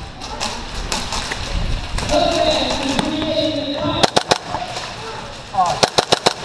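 Airsoft gun shots: three sharp cracks about four seconds in, then a quick burst of cracks near the end, from a gas blowback airsoft submachine gun (KWA MP7) and other guns nearby. Before the shots, voices are heard shouting.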